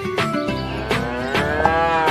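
A cow moos once, a long call that starts about a second in and rises then falls in pitch, over background music.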